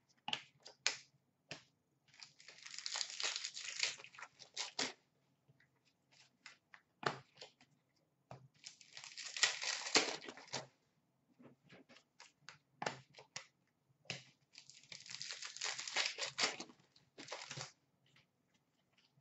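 Hockey card pack wrappers being torn open and crinkled by hand, in three stretches of one to three seconds each, with scattered light clicks of cards being handled between them.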